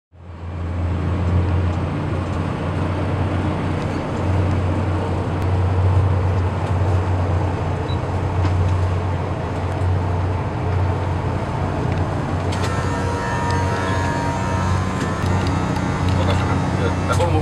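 Twin Scania diesel engines of a coast guard patrol boat running steadily under way: a deep, even drone over a rush of water and wind. Higher whining tones join near the end.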